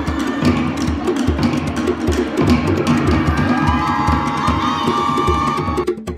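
Fast Tahitian drum music: rapid, evenly spaced wooden slit-drum strokes over a deeper drum, thinning out suddenly at the very end.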